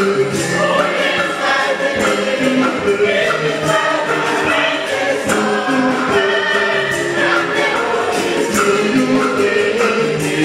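A church congregation singing a gospel hymn together in full voice, over a steady percussive beat.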